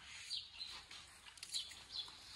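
Faint chirping of small birds: a few short, high, falling chirps spaced irregularly over quiet outdoor background.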